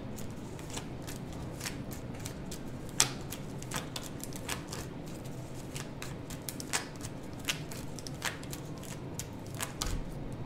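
A tarot deck being shuffled by hand: an irregular run of small card clicks and flicks, with one sharper snap about three seconds in.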